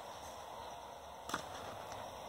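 A picture-book page being turned: one brief paper swish about a second in, over faint room hiss.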